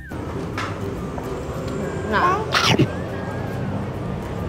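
Dining-room background noise of people talking and moving about. About two seconds in there is a short high, wavering cry, followed at once by a brief sharp noisy burst.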